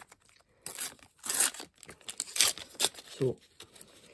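A Panini sticker packet being torn open by hand: several short rips and crinkles of the wrapper, about a second apart.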